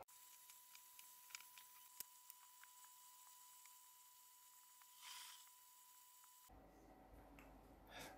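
Near silence: faint room tone, with a few faint ticks early and a brief soft rustle about five seconds in.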